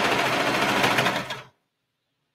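Brother serger (overlocker) running at speed, stitching and trimming a sweatshirt-fabric side seam with a fast, even chatter. It stops abruptly about a second and a half in.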